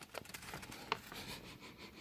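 Faint bubbling of jambalaya simmering in a slow cooker, with a few small pops or clicks, one about a second in.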